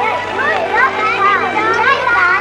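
Several children's voices chattering and calling out over one another, high-pitched and overlapping.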